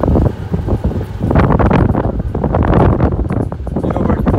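Wind buffeting the microphone as a golf cart drives along, with the low rumble of the ride underneath; gusty, growing louder about a second and a half in.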